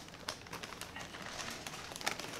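A brown paper takeout bag being handled and rummaged through by hand, the paper rustling with several short scratchy sounds.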